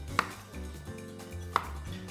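Two sharp knocks of a knife on a chopping board, about a second and a half apart, each with a short ring, as a lemon is cut. Background music with a low beat runs underneath.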